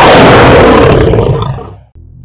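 A tiger roaring once, loud and harsh. The roar starts suddenly, holds for about a second and a half, then fades out.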